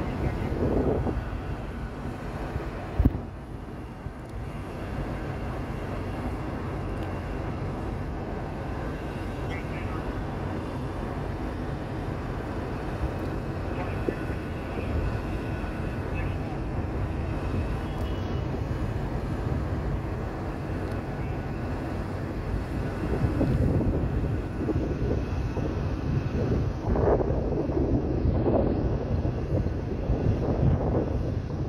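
City ambience heard from high up: a steady low rumble of distant traffic and city noise, with a sharp knock about three seconds in and faint voices near the end.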